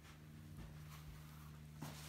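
Quiet room tone with a faint steady low hum.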